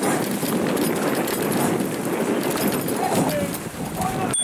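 Indistinct voices shouting, mixed with quick, regular footfalls of someone running along the riverbank path. A brief rising-and-falling call comes about three seconds in.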